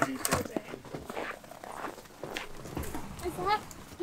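Frozen lake ice cracking underfoot as a car drives past on the ice: a few sharp cracks and knocks. A woman gives a short alarmed vocal sound near the end.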